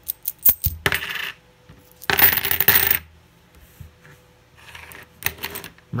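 A handful of 90% silver dimes clinking together and spilling onto a table. A few light clicks come first, then a short jingle about a second in, a longer, louder jingle about two seconds in, and softer clinks near the end.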